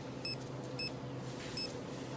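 Three short, high electronic beeps, under a second apart, typical of a store checkout scanner or register, over a steady low hum.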